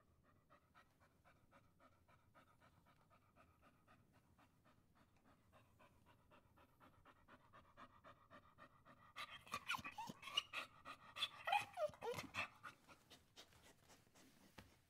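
A dog panting softly and quickly, then whining, with a louder run of short falling whimpers about two-thirds of the way through.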